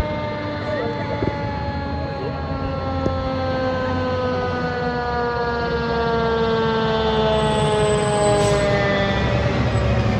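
Fire truck siren sounding one long tone that slides slowly and steadily down in pitch as it winds down. Under it is the low rumble of the trucks' engines, which grows louder near the end as the ladder truck passes close.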